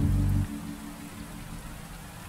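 Steady rain falling over soft relaxing music. A low sustained note ends about half a second in, leaving mostly the rain.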